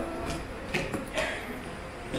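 Low chatter of a crowd of children, with a couple of short knocks about halfway through.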